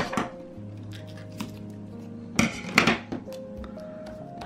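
Lofi background music with short crackling handling noises from washi tape and a clear cellophane bag. The two loudest come about two and a half seconds in, when a piece of washi tape is torn off the roll and pressed down.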